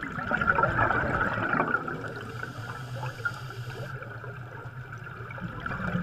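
Underwater bubbling: streams of rising air bubbles giving a steady gurgling, crackling rush with a low rumble beneath.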